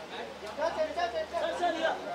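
Indistinct chatter of people's voices, getting louder from about half a second in.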